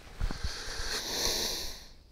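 A man's long audible breath out through his nose, close to a clip-on microphone, lasting about a second and a half and stopping suddenly near the end, with a couple of soft low knocks just before it.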